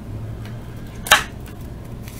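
Low steady room hum with one brief rustle about a second in, as trading cards are slid across one another in the hand.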